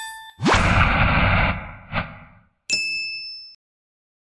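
Animated end-logo sound effects: a bell-like ding, a quick rising whoosh that fades over about two seconds, then a second, higher ding near the end that cuts off sharply.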